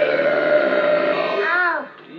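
A long, loud comic burp voiced for a wolf puppet after it has chewed up a basket. It holds one pitch for about a second and a half, then ends in a short wavering rise and fall.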